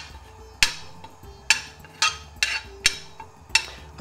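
Metal spoon knocking against an aluminium frying pan while stirring a cinnamon stick and bay leaf in warm oil: about six sharp, separate clinks, some with a short metallic ring.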